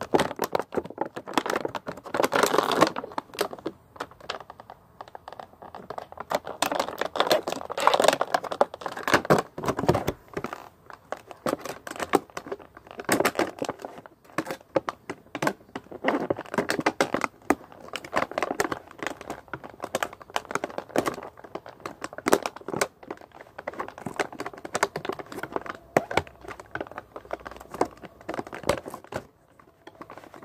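Plastic action-figure packaging being crinkled, pulled and torn by hand, an irregular run of crackles and clicks.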